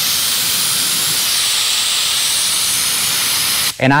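SATA Jet 100 B RP spray gun blowing compressed air from its air cap with no paint loaded: a steady hiss that cuts off suddenly near the end as the trigger is released.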